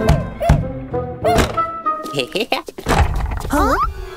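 Cartoon soundtrack: music with wordless character vocal sounds, and a few dull thunks in the first second and a half.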